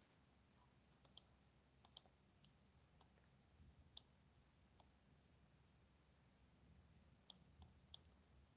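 Near silence with about a dozen faint, scattered computer mouse clicks, a quiet gap in the middle and a few more near the end.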